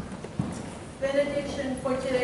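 Low room tone in a large, echoing room, then a person's voice begins about a second in.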